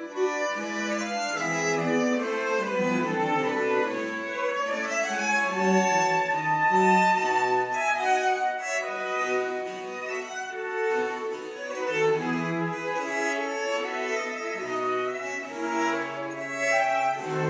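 Baroque chamber ensemble playing: violins and cello bowing, with flute and harpsichord, in a continuous passage of overlapping sustained notes.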